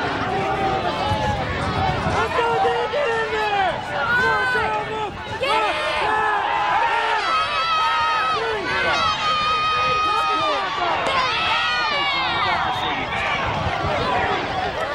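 Football crowd and sideline players shouting and cheering during a play, many voices overlapping, with one long held yell about two-thirds of the way through.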